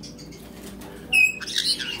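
A caique parrot gives one short, shrill whistled call a little past a second in, followed by a moment of scratchy rustling or chatter.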